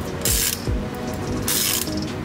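Ratchet wrench driving an H8 hex bit socket on a car's ball joint stud, clicking in two short bursts about a second apart.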